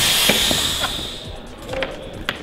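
Compressed-nitrogen air ram of a stunt jerk-back rig venting with a loud hiss that fades away over about a second and a half, with a few small clicks.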